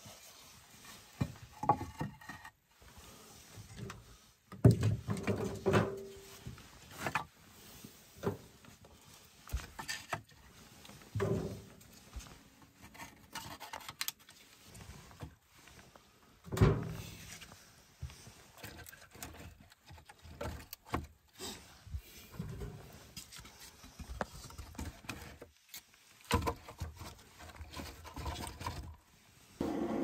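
Split firewood being loaded by hand into a brick stove's firebox: scattered knocks and scrapes of wood against brick, with quiet gaps between.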